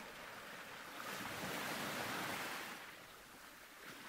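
A soft wash of noise that swells for about two seconds and then fades, like a wave washing up a shore.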